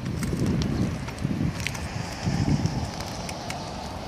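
Wind buffeting a handheld microphone in uneven gusts outdoors on a roof, with a few light footstep scuffs and clicks on asphalt shingles.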